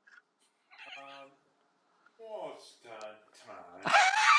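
Three short, faint vocal sounds from a distance, one about a second in and two close together near the end, heard over a video call.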